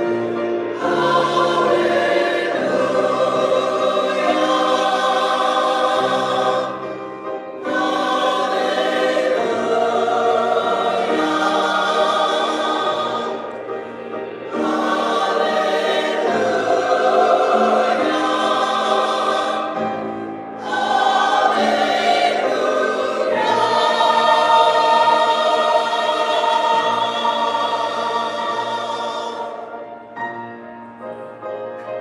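Congregation singing a hymn in unison with keyboard accompaniment, in four phrases with short breaths between them; the last chord fades out at the end.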